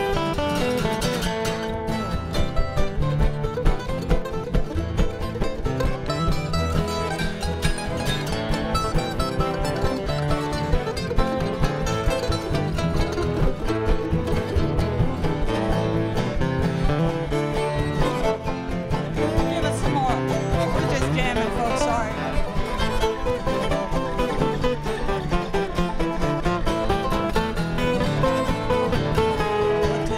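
Live acoustic bluegrass band playing, with strummed acoustic guitars, mandolin and upright bass together at a steady level.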